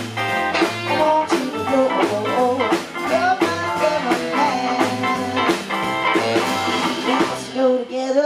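A live band playing an instrumental break in a bluesy rock-and-roll song: electric guitar with bending notes over a stepping bass line and a steady drum beat.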